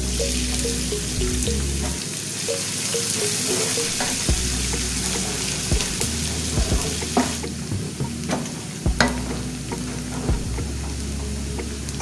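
Chopped onion sizzling as it is fried in hot palm oil in a non-stick pan, with a wooden spatula stirring and giving several sharp knocks against the pan from about four seconds in.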